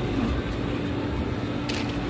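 Steady hum of counter equipment over busy indoor background noise, with a brief paper rustle near the end as napkins are pulled from a dispenser.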